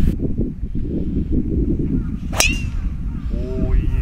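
A golf driver strikes the ball off the tee with one sharp crack about two and a half seconds in, followed by a brief ringing tail.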